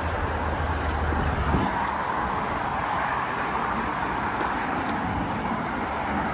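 Steady roar of road traffic, with a low hum underneath that stops about a second and a half in.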